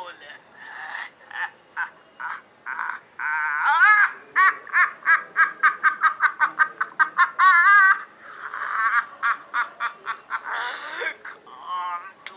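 A man's villainous, maniacal laugh: a long run of rapid pitched "ha-ha" pulses, about four or five a second, at its loudest in the middle with a long wavering held note, then thinning to scattered chuckles near the end.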